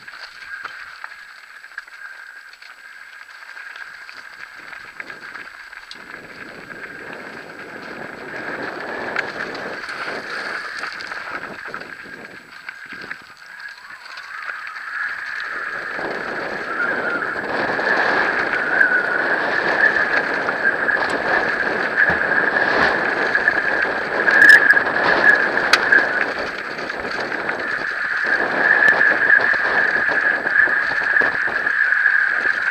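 Mountain bike descending a gravel trail at speed: tyres rumbling over dirt and loose stones, with wind and rattle, under a high buzzing tone that wavers in pitch. It gets louder and rougher about halfway through as the pace picks up.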